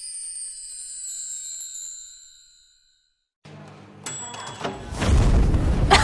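A bright, sparkling chime sound effect fades out over about two and a half seconds. After a brief silence, kitchen room sound comes in with a click and then a rising rush of noise near the end.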